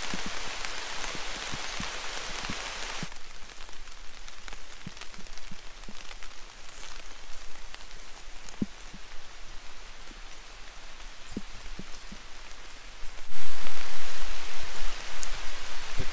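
Rain falling on forest leaves and undergrowth: a steady patter with single drops striking leaves close by. It drops to a softer patter about three seconds in and comes back heavier near the end.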